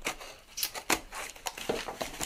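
A mailed cardboard package being handled and opened by hand: rustling, with a few short sharp clicks and snaps of card and packaging.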